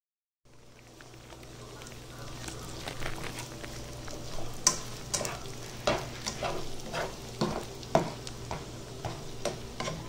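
Chopped turkey pepperoni frying in a nonstick pan, a steady sizzle that builds over the first couple of seconds after a brief silence. A spatula scrapes and clacks against the pan at irregular moments as the pieces are stirred.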